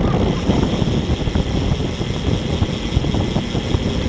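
Steady wind buffeting the microphone of a camera moving on a road bicycle at about 24 mph, a loud low rumble of rushing air.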